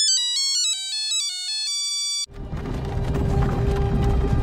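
A short electronic jingle of quick, high-pitched beeping notes stepping up and down like a ringtone, cut off abruptly a little over two seconds in. It is followed by a fuller, lower background of music and noise with a steady held tone.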